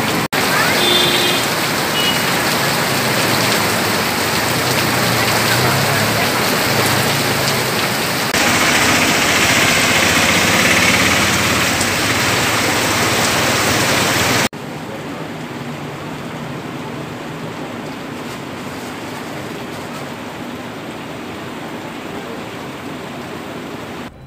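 Steady rain falling on a waterlogged street, with passing vehicles splashing through the water. The sound gets louder for a few seconds and then drops abruptly about two-thirds of the way through.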